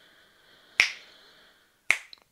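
Two sharp clicks about a second apart, with a faint high hiss between them.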